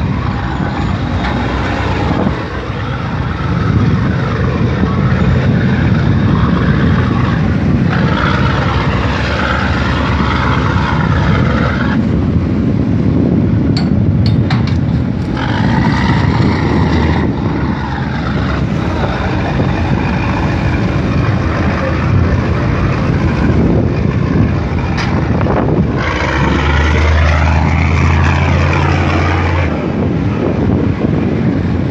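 Continuous engine drone from a helicopter and boats working a tuna purse-seine set at sea, with the helicopter's rotor growing loudest near the end as it flies in close.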